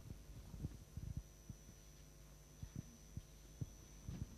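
Low-level room sound through a lectern microphone: a steady electrical hum with a thin high whine, broken by irregular soft low thumps, several each second.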